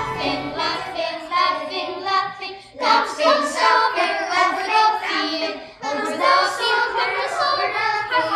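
Children singing together in short phrases, with brief breaks about three and six seconds in.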